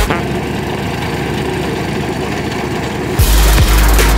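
Vibratory plate compactor's small engine running with its plate vibrating, a steady mechanical rattle. About three seconds in, loud bass-heavy electronic music cuts back in.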